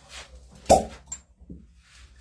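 A glass fire-cupping cup smacks onto, or pulls off, the skin of a man's back with one sharp, short sound about two-thirds of a second in, followed by a faint glassy tick.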